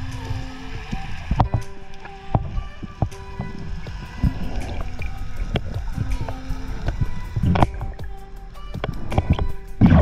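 Background music with held notes and short percussive hits. Near the end, a loud rush of water as the underwater camera breaks the surface.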